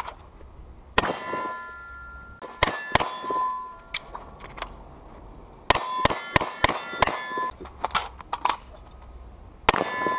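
Carbine and pistol shots fired at steel C-zone targets, each shot followed by the bright ring of the steel plate being hit. The shots come singly early on, then in a fast string of about eight between six and seven and a half seconds in.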